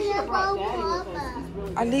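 A woman and young children talking.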